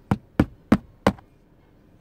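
Four sharp knocks in quick succession, about a third of a second apart, all within the first second or so.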